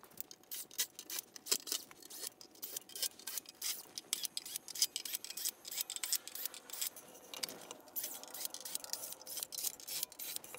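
Light clicks, taps and scrapes of screws and a cordless drill-driver being worked on the compressor's sheet-metal cover, coming as a steady patter of short sharp sounds.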